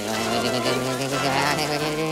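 Steady electric buzz with a fast, even flutter on top, about ten pulses a second: the film sound effect of the robot Johnny 5 speed-reading, riffling through a book's pages at high speed.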